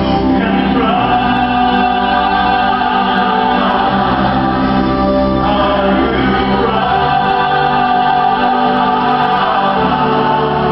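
Church choir singing a gospel worship song, holding long chords that shift every couple of seconds.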